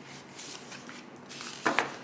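Tarot cards being handled: soft rustling of card stock sliding as a fanned deck is gathered together, then two sharp taps close together near the end as the stack is knocked square.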